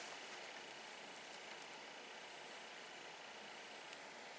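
Very quiet outdoor background: a faint, steady hiss with no shots or other distinct sounds.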